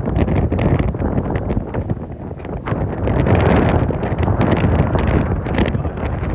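Strong wind blowing across a phone microphone: loud, gusty buffeting with crackles, swelling to its loudest about halfway through and drowning out any voices.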